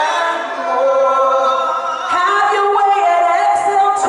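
Two women singing a gospel praise song into microphones, their voices held on long notes that slide between pitches.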